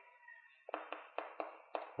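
Chalk writing on a blackboard: a quick run of about seven short taps and scrapes as letters are written, starting a little after half a second in.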